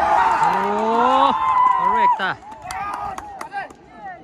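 Many voices shouting and cheering at once as a goal goes in, loud for about two seconds, then dropping to scattered shouts and a few claps.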